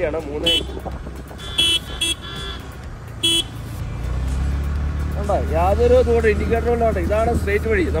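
Several short vehicle horn toots in the first few seconds, over the low, steady running of a motorcycle engine that grows louder about halfway through as the bike gets under way behind a car.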